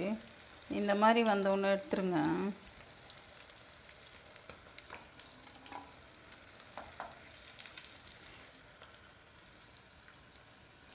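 Baby potatoes shallow-frying in oil in a non-stick pan, a faint steady sizzle, with a few light taps and scrapes of a wooden spatula turning them around five to seven seconds in. A voice speaks briefly over it in the first couple of seconds.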